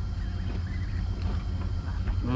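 An engine running steadily with a low drone.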